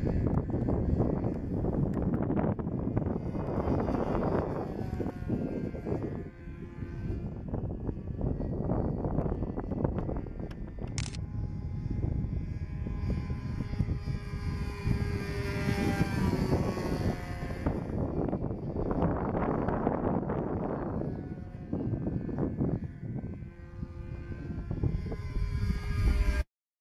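Phoenix Decathlon .46 radio-controlled model plane's engine and propeller droning in flight, the pitch gliding up and down as it passes overhead. Heavy wind buffeting on the microphone is mixed in.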